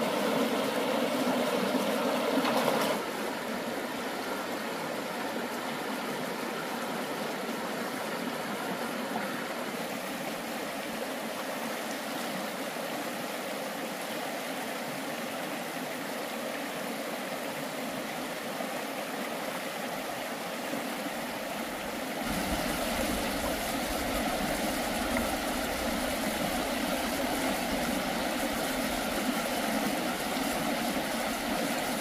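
Shallow rocky stream running over stones: a steady rush of water. It drops to a softer rush about three seconds in, then grows fuller with a low rumble about three-quarters of the way through.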